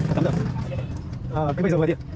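A man's voice speaking briefly, over a steady low hum.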